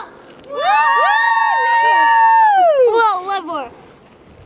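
Several children yelling together in one long, high, drawn-out shout that holds steady for about two seconds, then falls away in pitch near the end.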